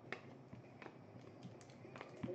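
Near silence with a few faint, sharp clicks scattered through it.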